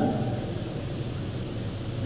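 Steady hiss and background noise of an old recording, with no other distinct sound.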